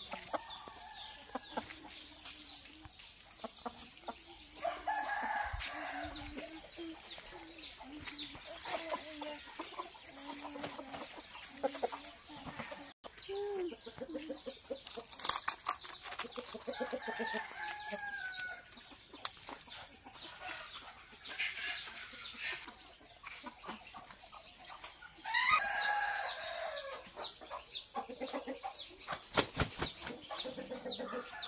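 Aseel roosters clucking, with several longer crows; the loudest crow comes about three quarters of the way through.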